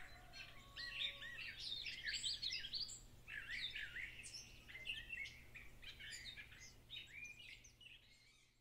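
Faint birdsong: several small birds chirping and trilling in quick overlapping calls, fading out at the end.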